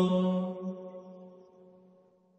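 Orthodox church chant in Church Slavonic holding its final note, a sustained sung chord that fades away over about a second and a half to near silence.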